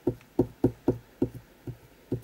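A quick run of seven soft knocks, about four a second, as a small hand tool is pressed down along a freshly glued paper strip on a desk.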